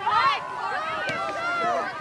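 Many voices calling and shouting over one another, from soccer players on the field and people along the sideline.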